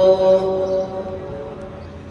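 A man's amplified religious chant over loudspeakers, a long drawn-out note that ends and dies away in echo about a second in, leaving the low hum of the open courtyard.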